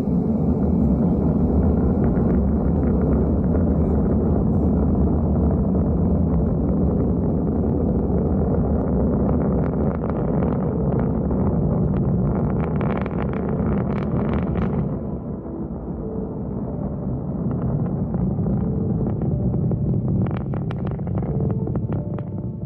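SpaceX rocket launch heard from a distance: a steady low rumble of the engines, with bursts of crackling in the second half.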